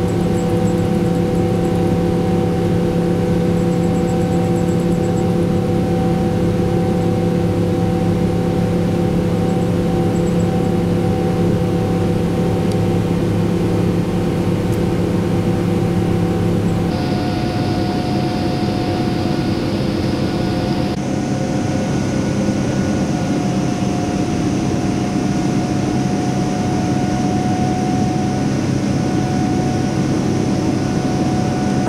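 Steady jet airliner cabin noise during the climb after take-off: engine hum with several constant tones over the rush of air, as heard inside the cabin. Its tone changes abruptly about 17 seconds in.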